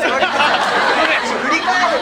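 Several men's voices talking and calling out over one another at once, loud and jumbled.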